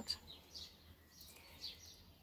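A small bird chirping faintly: several short, high, falling chirps, over a low steady hum.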